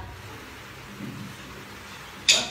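Quiet lull: a faint low hum and hiss of room tone, with a soft knock about a second in.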